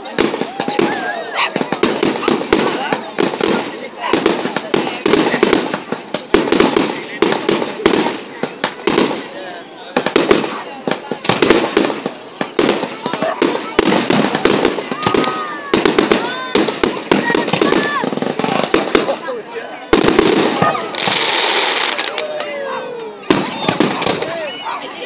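Fireworks display: a continual run of sharp bangs and crackles from aerial shells and rockets bursting overhead, with a dense crackling hiss about twenty seconds in.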